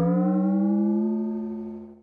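Cartoon sound effect for a television screen going dark: a single sustained buzzy tone that rises slightly in pitch, then fades away near the end.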